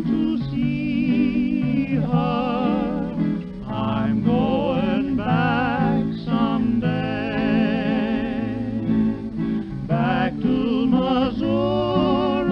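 Old 1931 country recording: a man singing in long phrases with a wide vibrato over two acoustic guitars.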